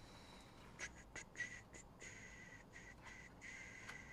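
Faint high squeaking with a few light clicks as a thick autographed trading card is pushed into a tight plastic card sleeve; the squeak stops and starts several times.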